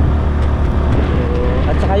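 Motorcycle engine running steadily with a low, even hum.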